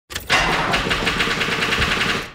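Car engine cranking on its electric starter motor, a rapid, even chug that does not catch and run: a car that won't start.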